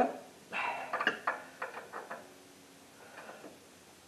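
Steel screwdriver clicking and scraping against a cotter pin as its legs are pried apart, with a louder, harsher sound about half a second in and a few small metal clicks up to about two seconds in.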